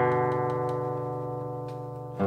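An acoustic guitar chord left ringing, fading slowly.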